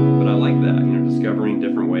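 Electric guitar chord, a C-sharp minor 7 in an unusual voicing, struck just before and left ringing steadily, with a man talking over it.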